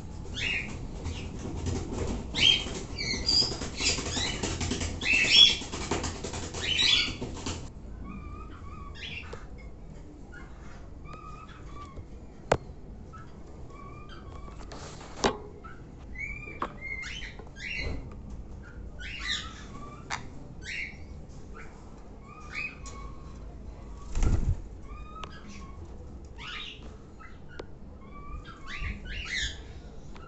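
Caged birds rustling and fluttering for the first several seconds, then short chirping calls repeated every second or so. A couple of sharp clicks and a dull thump about two-thirds of the way in.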